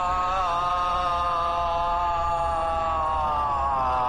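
Background score of a TV serial: one long held note that wavers slightly and sinks a little in pitch toward the end, in a chant-like tone.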